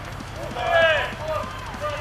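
A raised voice calling out once, higher-pitched than the commentary, from about half a second to one second in, with a weaker call after it, over a low steady hum.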